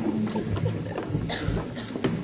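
Muffled low rumble and indistinct murmur of a large hall, with a few scattered light knocks.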